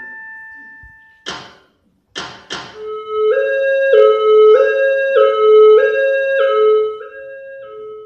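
A held keyboard note fades out, then a few sharp thuds, followed by a recorded two-tone hi-lo siren switching between two pitches about every half second, like an ambulance siren, which drops in level in its last second.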